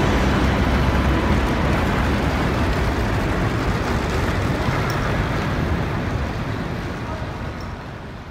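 Airport terminal ambience: a steady, noisy hubbub with indistinct voices, fading out near the end.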